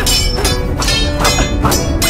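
Dramatic film score under the sound effects of a sword fight between a rapier and a Chinese straight sword: a quick run of sharp hits and swishes, about four in two seconds.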